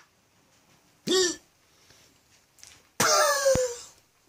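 Two short wordless vocal sounds: a brief one about a second in that rises and falls in pitch, and a longer one about three seconds in that slides down in pitch.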